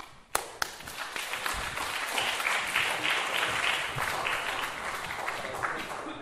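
An audience applauding at the end of a talk, a dense clatter of many hands clapping that starts just under half a second in, opened by two sharp knocks.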